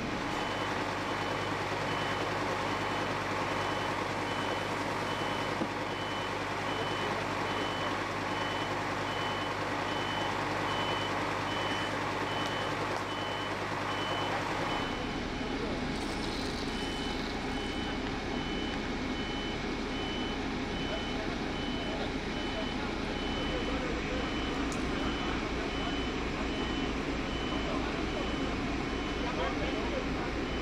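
A heavy vehicle's reversing/warning beeper sounding in rapid, evenly spaced high beeps, over a heavy diesel engine running steadily.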